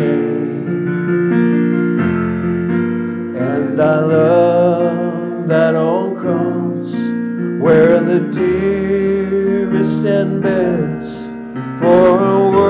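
Yamaha electronic keyboard played with a piano sound, accompanying a man singing a hymn into the microphone; the voice comes and goes over the held chords.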